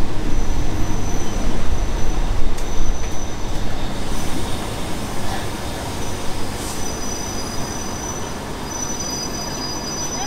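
Passenger train heard from aboard, running into a station and braking: a rumble of wheels on the rails that eases off over the second half as it slows, with thin high-pitched wheel and brake squeals that grow stronger near the end.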